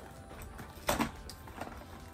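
Rustling of plastic-wrapped candy canes and a cardboard box as a hand digs one out, with one short sharp crinkle about a second in.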